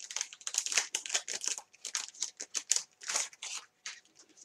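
A homemade glitter sheet of dried Mod Podge and glitter crinkling and crackling as it is handled, in quick irregular crackles.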